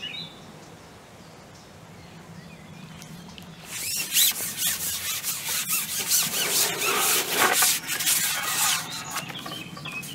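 A carbon fishing pole being shipped back, its sections sliding and rubbing across the angler's lap and hands; a scratchy rubbing that starts about four seconds in and lasts about five seconds.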